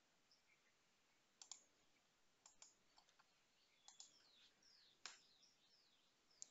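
Near silence with a handful of faint computer mouse clicks, scattered singly and in pairs, as windows are switched and a password is pasted into a terminal.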